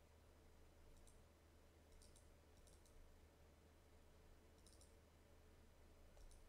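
Faint computer mouse clicks in near silence: a single click about a second in, then three quick double-clicks, over a low steady hum.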